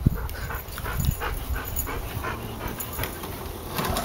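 Yellow Labrador retriever panting in quick, even breaths, about four a second.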